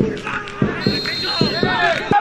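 Footballers shouting over one another during a goalmouth scramble, with several dull thumps and a short, thin, high whistle in the middle.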